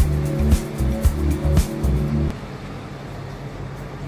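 Music with a heavy bass line, which drops away a little over halfway through, leaving quieter low background noise.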